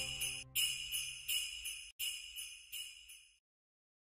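Jingle bells shaken in short strokes, roughly one every half second, each dying away, over the fading tail of the music; the last shake comes a little after three seconds in, then the sound stops.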